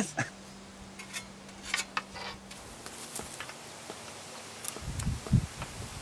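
Quiet outdoor background with a low steady hum and a few faint scattered clicks, then low thuds and rustling near the end, as of someone moving about and handling wooden poles.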